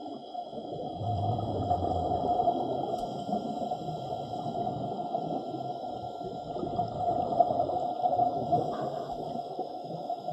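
Underwater sound picked up by a camera in its housing: a steady, muffled wash of water noise with several constant tones running through it, a low rumble swelling briefly about a second in.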